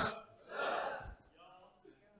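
The end of a man's loud shouted word into a handheld microphone, then a short breathy gasp about half a second in.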